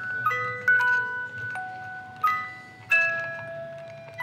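Small hand-cranked music box movement playing a tune, the plucked steel tines of its comb ringing out note by note. It is set on a wooden top that resonates like a guitar's hollow body, so the tune sounds significantly louder.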